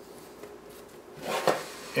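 Hands handling soft dough balls and a square metal baking pan, with one short knock from the pan about a second and a half in.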